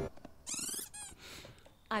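A brief, very high-pitched squeaky cartoon voice from the edited pony cartoon, wavering in pitch for about half a second, followed by a few faint short sounds.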